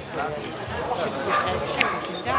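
A dog barking, with people talking around it.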